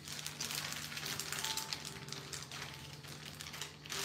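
Light irregular clicking and rustling of small cardboard boxes of fountain-pen ink cartridges being handled and sorted through, over a faint steady hum.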